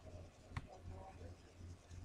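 A single computer mouse click about half a second in, over faint room tone and a steady low hum.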